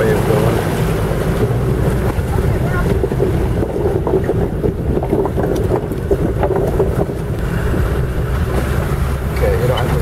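Old Land Rover's engine running steadily at low speed as it drives through a water crossing, with water splashing and sloshing against the wheels and body.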